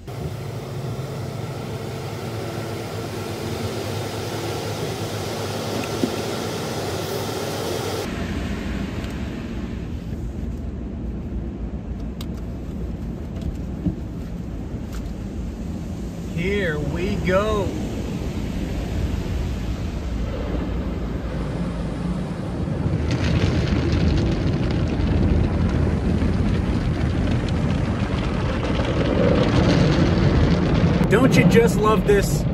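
Automatic car wash heard from inside the car's cabin: a steady rush of water spray and brushes on the body, changing abruptly about a quarter of the way through and growing louder over the last several seconds.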